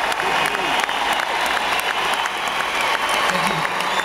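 Concert audience applauding just after the band stops playing: dense clapping with voices and shouts from people close to the microphone.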